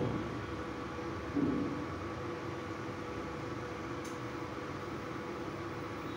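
Steady hum and hiss from an induction cooktop running under a kadhai of hot frying oil, with a brief soft sound about a second and a half in.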